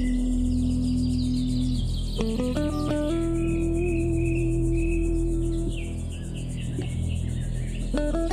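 Instrumental music: an electric guitar played through a Roland GR-55 guitar synthesizer holds long sustained notes, with a quick climb of notes a little after two seconds, over a steady low electronic backing track. Short high chirps sound above the melody.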